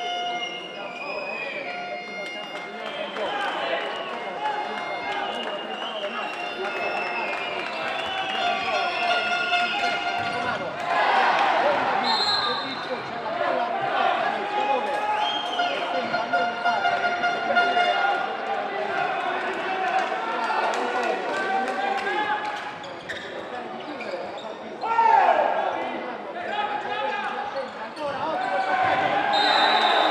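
Handball match play: the ball bounced on the court floor, with many short squeaks gliding up and down in pitch, over players' and spectators' voices.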